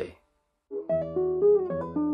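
Classical nylon-string guitar starting about a second in after a brief silence, playing a slow fingerpicked melody of single notes over ringing bass notes.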